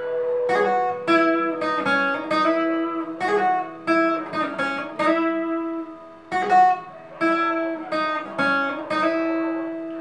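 Acoustic guitar playing a slow single-note melody on the top two strings: separate plucked notes, some joined by hammer-ons and slides up the neck.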